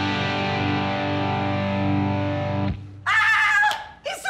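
An electric guitar chord, strummed just before and left ringing, is cut off short about two and a half seconds in. A brief high voice follows near the end.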